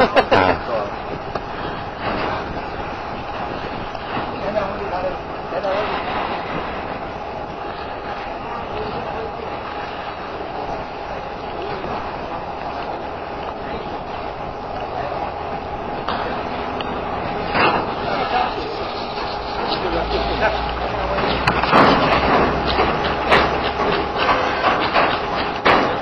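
Indistinct voices over steady outdoor background noise, with louder bursts in the last third and a low rumble joining about twenty seconds in.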